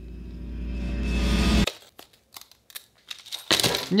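A buzzy synth tone swells steadily louder and cuts off suddenly, an edited-in tension sting. Then come faint crinkles and clicks of a small plastic bag of kit screws being pulled at, and a sharp burst near the end as the bag rips open.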